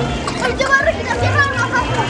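Young children's voices calling out and chattering as they play, over background music with a steady bass line.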